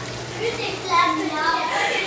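A young girl's wordless vocal sounds: a few short, wavering calls in the second half, over a low steady hum.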